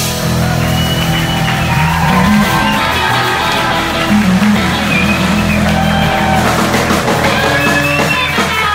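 Live instrumental trio: electric guitar playing sustained, bending lead lines over Fender electric bass and a drum kit with cymbals.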